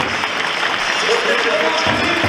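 Stadium crowd applauding, with a public-address announcer's voice over the loudspeakers during the starting-lineup announcement.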